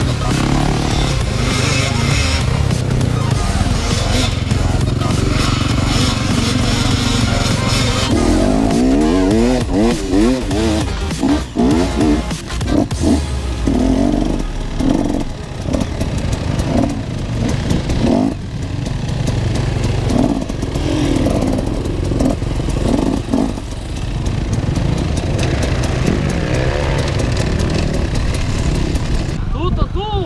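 Dirt bike engines running and revving, mixed with background music that has vocals.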